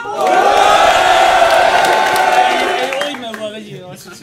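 Audience cheering and shouting together, loud for about three seconds and then dying down.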